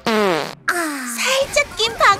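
Cartoon fart sound effect: a loud pitched toot that falls in pitch, breaks off briefly and trails on lower for under a second. A character's voice follows near the end.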